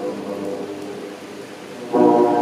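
A pause between blasts of a cruise ship's horns: the last horn chord dies away over about a second, leaving a steady background hiss, and the horns come in loud again at the very end.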